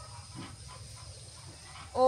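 A quiet pause between sung phrases: over a low background hum, a faint, brief animal call sounds about half a second in. The woman's singing voice comes back in at the very end.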